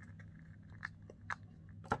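A few faint, sharp clicks, the clearest about a second in and just before the end, over a steady low electrical hum.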